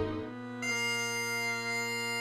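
Bagpipe music: the drones sound one steady low note, and about two-thirds of a second in the chanter joins on a high held note.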